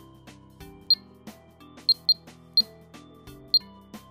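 Videofied alarm panel keypad giving a short high beep with each key press while a name is typed: five quick beeps, two of them close together.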